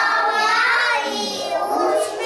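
A group of small preschool children singing together in chorus.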